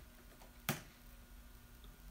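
A single sharp click from a laptop, such as a trackpad or key press, a little under a second in, over a faint steady hum of room tone.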